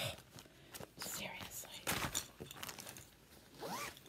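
Plastic pattern sleeves and packaging rustling and crinkling as they are handled, with irregular short scrapes and crackles.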